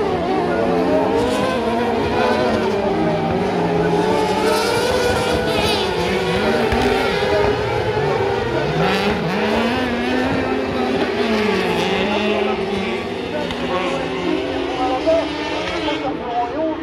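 Several kart cross buggies' motorcycle engines racing on a dirt track, revving hard with pitch rising and falling through gear changes as they pass.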